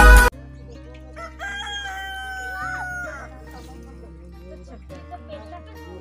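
Loud music cuts off abruptly just after the start. About a second and a half in, a rooster crows once: a call of nearly two seconds that holds its pitch and drops at the end.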